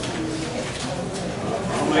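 Low, indistinct voices murmuring in a meeting hall, with a few light knocks and shuffles.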